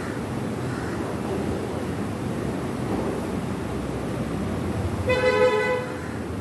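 Steady low rumble of road traffic, with a vehicle horn sounding once for about a second near the end.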